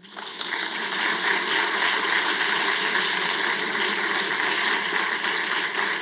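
An audience applauding steadily to welcome a speaker to the lectern.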